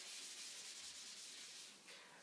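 Faint, even rubbing of a whiteboard eraser wiping the board clean, fading a little near the end.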